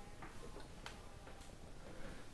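Quiet room with a few faint, soft taps spaced a little over half a second apart: footsteps of a person walking across the floor.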